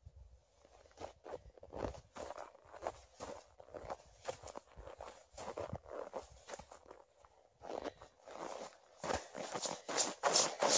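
Boots crunching and stamping on packed, groomed snow as a person jumps and steps, about two footfalls a second. The steps grow louder near the end as they come closer.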